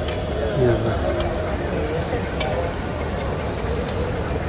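Voices of people talking nearby over a steady low rumble.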